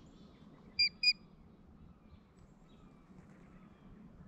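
Two short, sharp bird calls in quick succession about a second in, over faint outdoor background noise.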